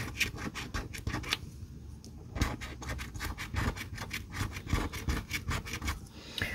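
A coin scraping the coating off a scratch-off lottery ticket in quick back-and-forth strokes, several a second, with a short pause about a second and a half in.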